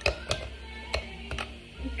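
Frozen strawberries dropping from a bowl into a plastic blender cup: about four separate hard clicks and knocks as the pieces hit the plastic and each other.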